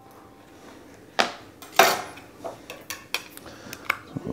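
Kitchen utensils clinking and knocking: a knife and a spoon against a metal mixing bowl and the countertop. There are two sharp clinks about a second and two seconds in, then lighter taps and scrapes.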